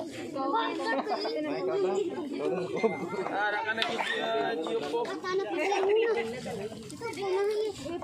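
Children's voices chattering over one another.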